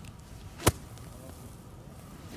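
Golf iron striking the ball off fairway turf: a single sharp crack about two-thirds of a second in.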